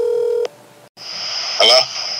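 A steady telephone-style tone cuts off suddenly about half a second in. After a brief silence, a phone line opens with hiss and a thin high whine, and a man's voice comes on over the phone near the end.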